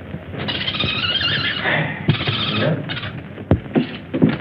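A monkey screeching in high, wavering calls: one long burst, then two shorter ones, with a sharp click about three and a half seconds in.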